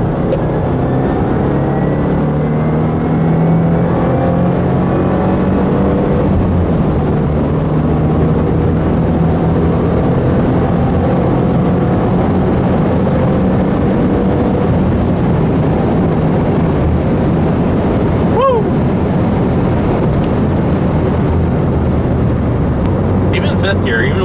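2015 Subaru WRX's turbocharged 2.0-litre flat-four engine and road noise heard from inside the cabin. The revs climb steadily under acceleration for the first several seconds, then hold steadier at speed. There is a brief chirp about eighteen seconds in.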